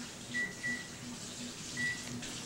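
Three short, high beeps, two close together near the start and one near the end, over a faint hiss.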